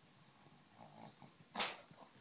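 Small Brussels Griffon dog playing, making low grumbling growls, then one short loud huff about a second and a half in.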